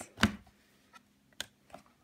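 A few sharp clicks and taps from handling a thick cardboard board book's page and flap: a loud one about a quarter second in, a smaller one about a second and a half in.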